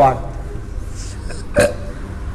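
A man's speech trails off at the start into a pause over low steady room noise, broken about one and a half seconds in by one short vocal sound from the throat.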